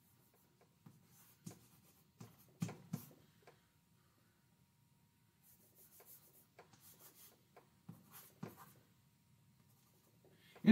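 Faint, intermittent taps and short scratches of chalk writing on a blackboard. The loudest is a pair of taps about three seconds in, followed later by a run of quick, hissy strokes.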